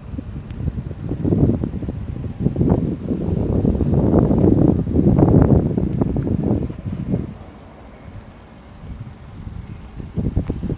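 Wind buffeting the microphone in gusts, a low rumble that swells through the middle and eases off near the end.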